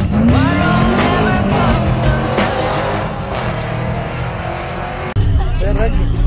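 Drag car engine revving, its pitch rising, as the car pulls away, mixed with music that carries vocals. A louder low rumble comes in suddenly about five seconds in.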